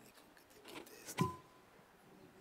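Faint rustling and movement in a large hall, with one sharp knock with a low thud a little past a second in, followed by a brief ringing tone.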